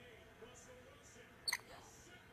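A single short, sharp, high-pitched squeak from a green-naped lorikeet about one and a half seconds in, over a faint quiet background.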